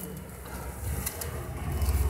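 Faint outdoor street background with a low rumble that grows a little towards the end, and a few light ticks.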